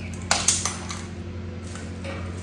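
Bronze cloisonné vases being handled and turned on a tabletop: two sharp metallic knocks with a brief ring in the first half second, then fainter clinks and scraping.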